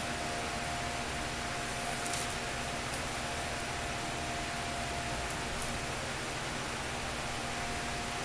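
Steady background hiss with a faint constant tone running under it, and a few faint soft ticks.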